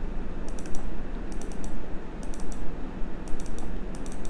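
Computer mouse button clicks in quick clusters, double-clicks opening one folder after another, repeated several times over a steady low background hum.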